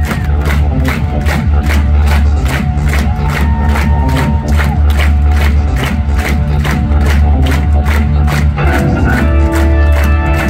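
Rock band playing live through a theatre PA: drums keep a steady beat of about four hits a second under heavy bass and sustained keyboard and guitar tones, with new held chords coming in near the end.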